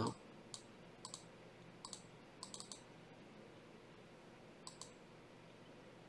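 Faint clicks of a computer mouse, about eight in all, some single and some in quick pairs, spread irregularly over a quiet room.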